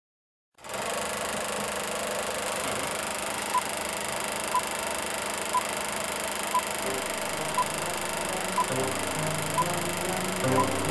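Film-countdown leader sound effect: a steady whirring, crackling noise like an old film projector running, with a short high beep once a second from a few seconds in, seven beeps in all. Low music notes come in under it near the end.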